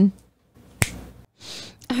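A single sharp click about a second in, followed by a short breathy hiss. A woman's voice trails off at the start, and new speech begins at the very end.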